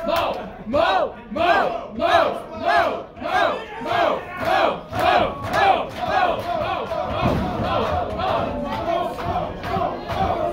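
Wrestling crowd chanting in unison, shouts rising and falling in pitch at nearly two a second. After about six seconds the chant gives way to more continuous cheering.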